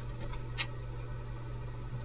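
Room tone with a steady low electrical hum and a faint short tick about half a second in.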